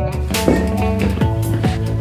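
Background music: a guitar-led track with a steady drum beat.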